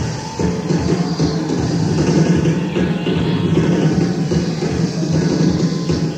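Live rock band playing in concert: electric guitar over bass and drums, continuous and loud.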